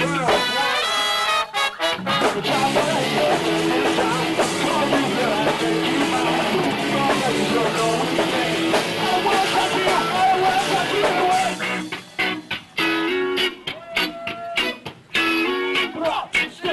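Live ska-punk band playing, recorded on a camcorder: horn section (trumpet, trombone, saxophone) over electric guitar, bass and drums. It opens with held horn chords, and from about three-quarters of the way in it breaks into short stop-start horn stabs and drum hits.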